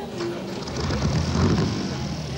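A car engine running, its low rumble swelling louder about halfway through.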